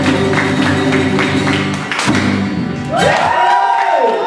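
Live band of acoustic guitar and djembe playing with singing, the strums and drum strokes coming in a steady rhythm. About three seconds in, the instruments stop and voices slide up into long held notes.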